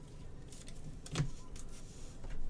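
A trading card and its plastic sleeve being handled on a table: short plastic rustles and a sliding scrape with a soft thump just after a second in.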